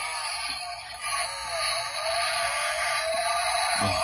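The CHEZHI 1:24 Range Rover die-cast model's built-in sound module playing its electronic sound effect through a tiny speaker: thin and tinny, with no bass, and a tone that rises slowly in pitch.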